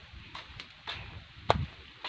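Low rumble and scuffing from a hand-held camera carried by someone walking, with one sharp click about one and a half seconds in.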